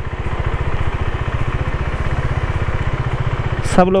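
KTM RC 390's single-cylinder engine running steadily as the motorcycle rolls along a dirt trail, an even low throb of firing pulses. A short sharp click comes just before the end.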